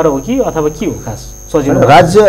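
A man talking over a steady electrical hum, with a short pause about a second in.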